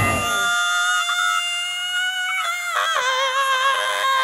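A break in a rock song: the drums and bass drop out just after the start, leaving sustained high held notes that waver and dip in pitch twice near the middle, before the full band comes back in.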